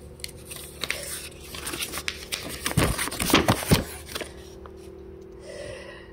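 Paper and packaging being handled: a run of crinkles, rustles and light taps, loudest a little before the middle, then dying away over a faint steady hum.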